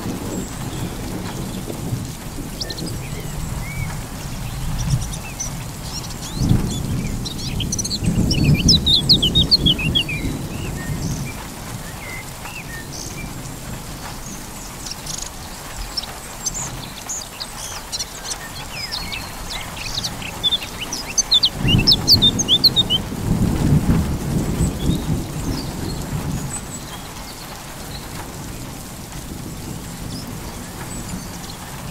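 Steady rain with two long rolls of thunder, one starting about six seconds in and another a little past twenty seconds, each lasting around five seconds. Birds chirp in quick, short calls around and during each roll.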